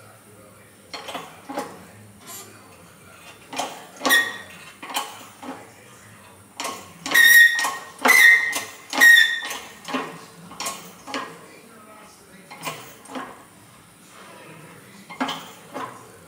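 Irregular metal-on-metal knocks and clinks as a classic Ducati bevel-drive crankshaft and its steel press tooling are worked and seated under a press. Most come in pairs, and the three loudest, about halfway through, ring on briefly.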